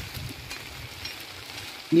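Steady hiss of a rain gun sprinkler's water jet spraying over a field crop.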